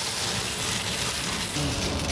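Coins jingling continuously as they pour out of an emptied bus fare box onto a pile of coins and paper tickets.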